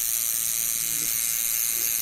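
A steady, high-pitched mechanical whirr with a faint low hum under it, unchanging throughout.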